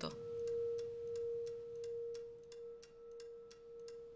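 A clear, sustained ringing tone that slowly swells and fades, held throughout, over a quick, steady ticking like a clock.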